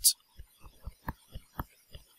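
Soft, faint taps and knocks of a stylus writing on a tablet, about eight short strokes scattered over two seconds.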